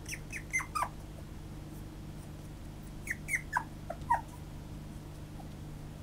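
Toy poodle puppy giving short high cries, each falling in pitch, in two runs of several: one at the start and another about three seconds in.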